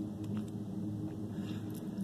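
Freight train passing at a distance: a steady low rumble and hum of rolling cars.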